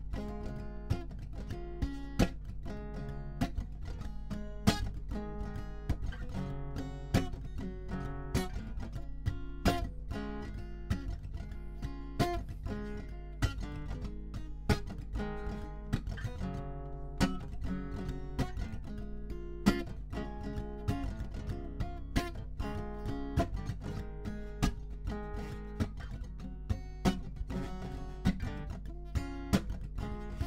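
Lowden acoustic guitar played solo in an instrumental break of a blues-folk song: a steady rhythm of picked and strummed chords with no singing.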